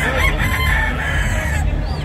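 A gamecock crowing once, a call of about a second and a half, over a steady low rumble of hall background noise.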